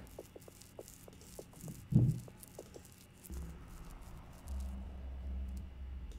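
Light clicks of desk work at a computer, with one dull thump about two seconds in and a low rumble through the second half. Faint background music plays underneath.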